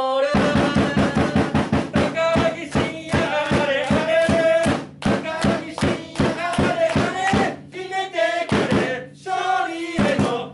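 Football supporters' player chant for a forward, sung to a steady drum beat, with words calling on him to score for victory. The drumming thins out about three-quarters of the way through while the singing carries on.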